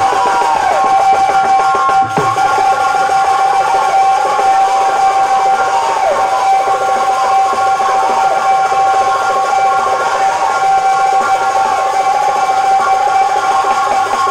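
Live instrumental interlude of a stage kirtan band: one note held steadily under a melody that glides up and down, with drumming throughout.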